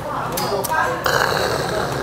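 A man's rough, throaty exhale right after knocking back a shot of soju, starting suddenly about a second in and lasting just over a second, with restaurant chatter behind it.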